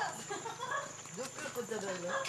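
Faint, indistinct voices with chickens close by. A rooster's loud crow cuts off right at the start.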